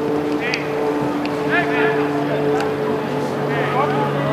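Footballers' shouts and calls during a passing drill, with a few sharp ball strikes, over a steady low mechanical hum.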